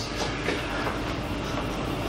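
Steady room noise: an even hiss with a low hum underneath, unchanging throughout.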